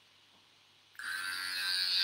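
Electric hair clippers switched on about a second in, then running steadily.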